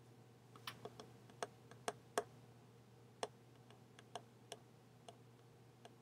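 About a dozen sharp clicks at an irregular pace, typical of computer keys or mouse buttons, the loudest about two seconds in, over a faint steady hum.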